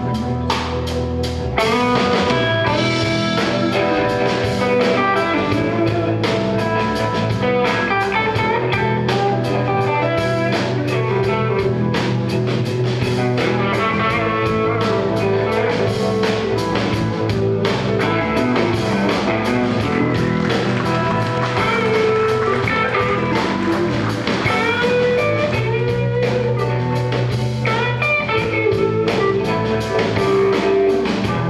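Live band playing an instrumental blues-rock passage: electric guitars, electric bass and drum kit, getting louder about a second and a half in as the full band comes in.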